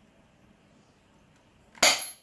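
An airsoft gun fires a single shot near the end, a sharp, loud crack after a stretch of near-quiet.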